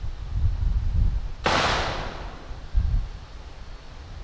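A single sharp crash about a second and a half in, which fades over under a second. Low dull thumps sound before and after it.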